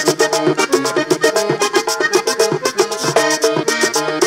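Live vallenato music: a button accordion plays a fast, busy melody over the quick, even scraping rhythm of a guacharaca and beats on a caja drum.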